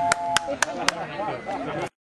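A 20-pipe roll-played street organ holds a final two-note chord that stops about half a second in. Four sharp, evenly spaced clicks at about four a second follow, then fainter sound until the audio cuts off just before the end.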